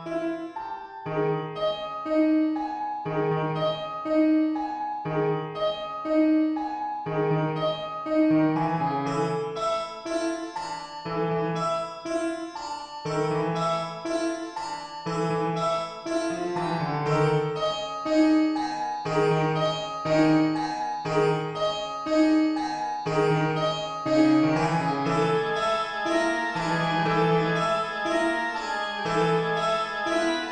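Harpsichord and organ music: a busy, repetitive harpsichord figure over low notes that recur about once a second, growing denser toward the end.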